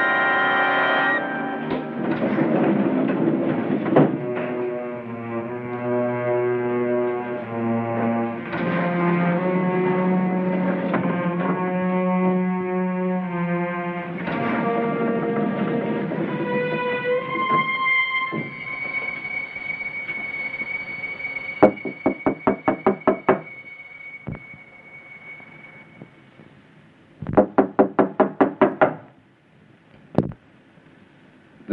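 Suspenseful film score: sustained chords that shift every few seconds, then one long high held note. Near the end come two runs of rapid, sharp knocking strikes, about six or seven in each.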